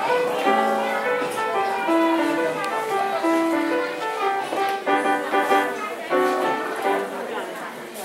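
Upright piano played solo by a child, a melody of separate notes over a lower accompaniment, the piece coming to its end near the close.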